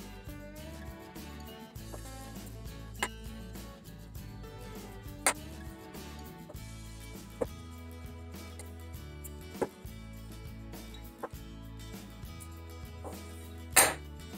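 Background music with steady bass notes; over it, about six sharp snips roughly two seconds apart as scissors cut lengths of string, the last one the loudest.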